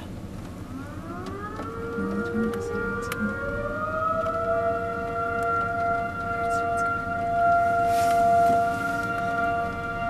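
Outdoor tornado warning siren winding up, its pitch rising over the first few seconds, then holding a steady wail of two tones sounding together.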